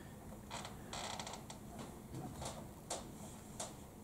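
Faint, scattered keystrokes on a laptop keyboard, a handful of separate taps with a quick little run of them about a second in, as a file name is typed into a terminal command.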